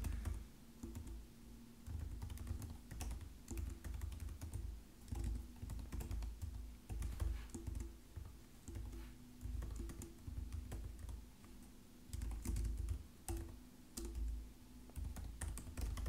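Typing on a computer keyboard: quick runs of keystroke clicks with brief pauses between them.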